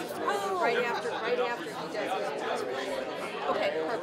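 Several people talking at once: overlapping conversations with no one voice leading.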